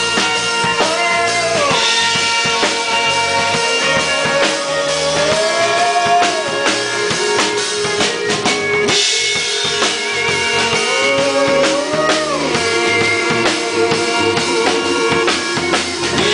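Live band playing an instrumental break: a pedal steel guitar holds and slides between notes over a full drum kit and guitar, with a melodica in the mix.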